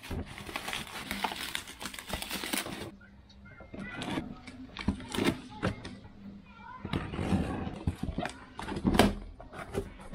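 Plastic bubble wrap crinkling and rustling for about three seconds as it is pulled off a cardboard box, then scattered clicks and scrapes as a pointed tool cuts along the box seam and the cardboard flaps are handled.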